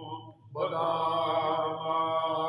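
Men chanting a Sindhi molood, a devotional praise song, without instruments, on long held notes. There is a brief break near the start, then one long sustained note.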